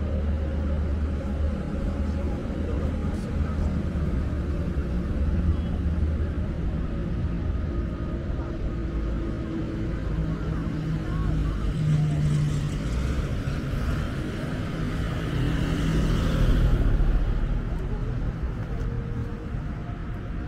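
Road traffic running beside the walker, with an engine hum in the first half. A car passes close near the end: its tyre and engine noise swells, then fades.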